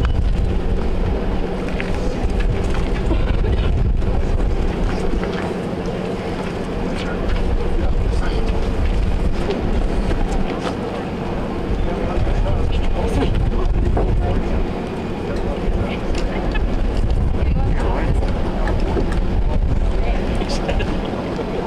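Steady low rumble of wind on an outdoor microphone, with faint voices murmuring underneath.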